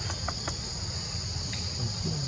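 Steady high-pitched insect drone, with a few faint ticks.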